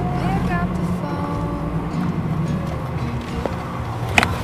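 Steady low hum of a car driving slowly, heard from inside the cabin, with a few brief bits of a voice.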